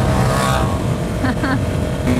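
KTM 690 SMC R's single-cylinder engine running under way at road speed, mixed with wind rushing over the microphone.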